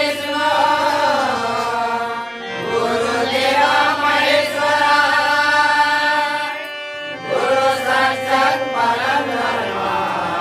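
Male voices singing a devotional bhajan with harmonium accompaniment. The singing breaks off briefly about two and a half seconds in and again about seven seconds in.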